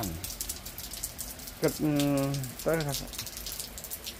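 Steady rain falling on a paved driveway and concrete steps: an even hiss sprinkled with many small drop ticks.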